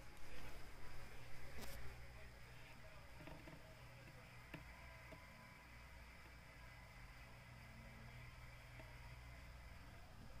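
Faint steady electrical hum, with a louder spell of rustling and one sharp click in the first two seconds.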